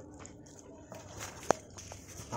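A metal spoon stirring thick vegetable khichuri in an aluminium pot, faint, with one short, sharp click about one and a half seconds in.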